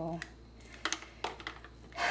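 A few faint clicks and knocks of a utensil against a ceramic crock pot holding thick soap paste.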